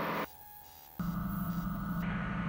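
Steady drone of a Van's RV-12 light aircraft's engine and propeller heard inside the cockpit. The sound drops out almost completely for under a second shortly after the start, then comes back steady.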